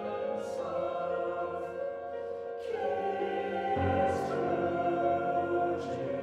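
Mixed-voice choir singing sustained, slowly shifting chords in a contemporary minimalist piece, with sibilant 's' consonants sung together several times. A low bass note comes in a little past the middle.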